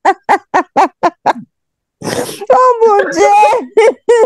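A man laughing hard: a quick run of short "ha" bursts, about four a second, that breaks off a little past a second in, then a longer, drawn-out stretch of laughing voice.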